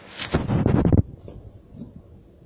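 Rustling, scraping handling noise on a phone microphone for about a second, then a quiet room.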